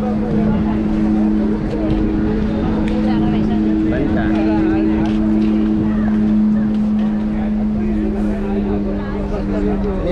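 A steady, unchanging engine-like drone from a running motor, with people's voices over it.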